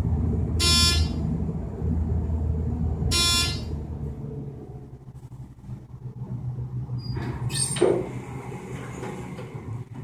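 Thyssenkrupp traction elevator car travelling upward with a low ride rumble that fades after about four seconds as the car slows. Two short electronic beeps sound about two and a half seconds apart. Near the end there is a brief louder sound as the car arrives and the doors open.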